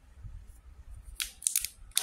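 A plastic spray bottle being handled. The first second is quiet, then comes a quick cluster of sharp clicks and rustles, and another sharp click near the end.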